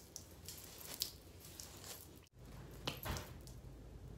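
Faint handling noises: a few soft, brief rustles and taps from hands and clothing, about a second in and again about three seconds in.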